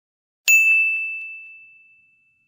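A single bell-like ding, struck about half a second in, ringing on one high clear tone with fainter higher overtones and fading away over about a second and a half.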